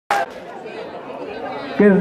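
A brief click at the very start, then low chatter of people milling around; near the end a man's voice starts speaking clearly.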